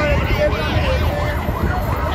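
A motorcade escort's siren sounding a rapid rising-and-falling yelp, over the rumble of crowd and vehicles.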